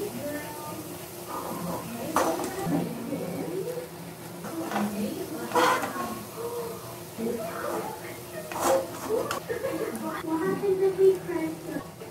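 A steel perforated skimmer knocking against the metal frying pan as fried gulab jamuns are scooped out, with sharp clinks about two seconds in, again around five and a half seconds and near nine seconds. Quiet voices talk in the background throughout.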